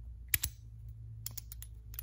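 Clicks of a spark plug being pushed into a 5/8-inch spark plug socket and held by the socket's rubber insert. Two sharp clicks come about a third of a second in, then a few lighter ticks near the end.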